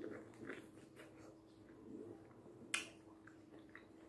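Faint chewing and mouth smacks of a person eating juicy orange segments, with one sharp click about two and a half seconds in.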